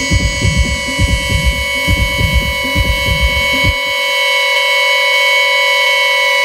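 Techno in a DJ mix: a steady kick-drum beat under a sustained synth tone. The kick and bass drop out about two-thirds of the way in, leaving the held synth tone alone in a breakdown.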